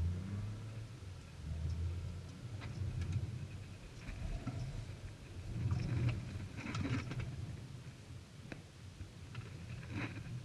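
Proton X50 SUV driving through a cone slalom, heard from inside the cabin: a low engine and road drone that swells and eases, with a few short sharp sounds around six to seven seconds in.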